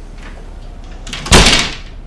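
A door shutting with a single thud about a second and a half in, with a few faint clicks just before it.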